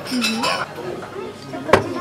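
A single sharp clink of tableware, chopsticks or a small glass bowl striking, about three-quarters of the way in, after a short murmured "mm-hmm" at the start.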